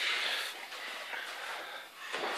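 Faint room noise with soft, indistinct shuffling and scuffing from two children sparring in boxing gloves on a ring canvas.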